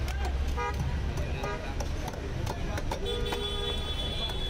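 Street traffic rumbling with vehicle horns honking: a short toot about half a second in, and a longer steady horn from about three seconds in. Scattered sharp clicks and knocks run through it.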